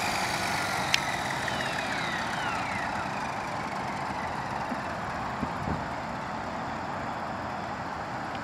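Align T-REX 450 Sport electric RC helicopter on the ground with its motor and main rotor spooling down: a high whine that falls in pitch over the first few seconds, over a steady rotor whoosh that slowly gets quieter. One sharp click about a second in.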